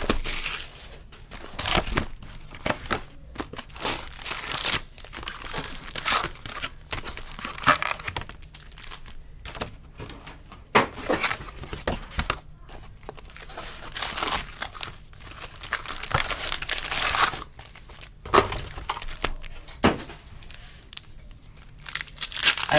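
Foil wrappers of Finest Flashback baseball card packs crinkling and tearing as the packs are handled and ripped open, in irregular bursts.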